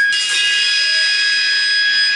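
Electric guitar amplifier feedback ringing on loud as the song ends: several steady high-pitched tones sounding together, with no drums or bass under them.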